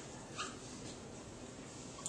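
Faint squeaks of a dry-erase marker writing on a whiteboard, the clearest one about half a second in, over low room noise.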